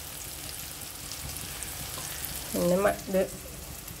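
Chopped onion and tomato sizzling in hot oil in a nonstick pan with chilli and turmeric powder, stirred with a spatula: a steady crackle of frying. A voice speaks briefly about two and a half seconds in.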